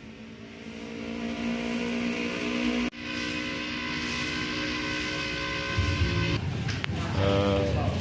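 A motor vehicle engine running at a steady pitch, growing louder over the first couple of seconds, with a sudden break about three seconds in before it continues until about six seconds. A man's voice begins near the end.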